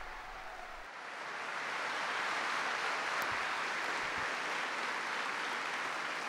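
Large crowd applauding in a big hall: steady clapping that swells a little about two seconds in and then holds.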